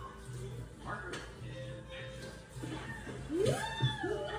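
Animated-film outtake soundtrack playing from a TV in the room: a clapperboard snaps shut about a second in, then a cartoon cowgirl gives a rising 'Whoo!' yell near the end, over soft background music.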